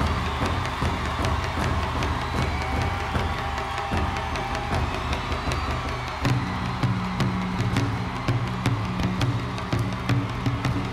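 Taiko drums struck with heavy sticks over a cheering crowd. About six seconds in, a low droning note enters under the drumming.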